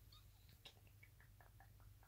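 Near silence: room tone with a low hum and a few faint soft clicks.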